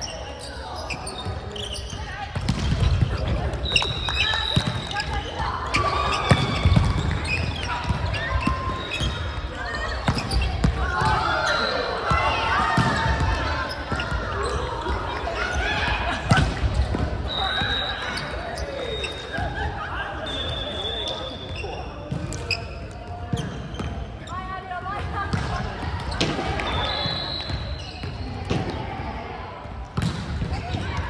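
Indoor volleyball play echoing in a large gymnasium: players' voices and calls overlap throughout, with the sharp knocks of the ball being struck. A few brief high squeaks are heard now and then.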